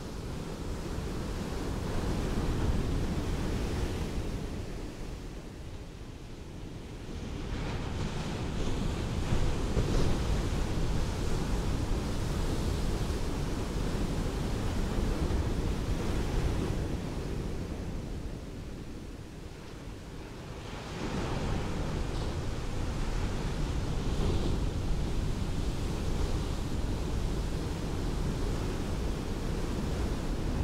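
Ocean waves breaking and washing up a beach, a steady wash of noise that eases into a lull twice, about six and about twenty seconds in.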